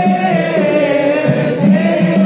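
A group of men chanting a devotional recitation together in unison, holding long notes that glide slowly up and down in pitch.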